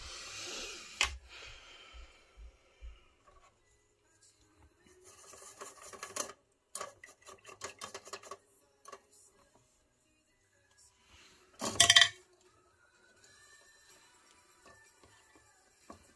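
Small hard painting tools and supplies being handled on a tabletop: scattered clinks and taps, a quick run of rattling clicks about five seconds in, and one louder clatter about twelve seconds in, with faint background music.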